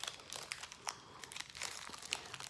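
Foil Pokémon card booster pack wrapper crinkling in the hands as it is pulled open, a faint run of irregular crackles.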